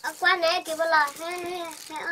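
A young boy's high voice singing a short sing-song phrase of three or four notes, the last one held longest.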